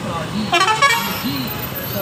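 A vehicle horn honks once, briefly, about half a second in, over street traffic noise.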